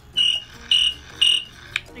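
Cricket chirping sound effect: three short chirps about half a second apart.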